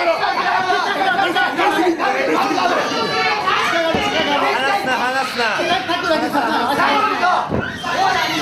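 Several men shouting over one another: cornermen calling instructions to grappling fighters, mixed with crowd chatter in a hall, with a couple of short low thumps about halfway through and near the end.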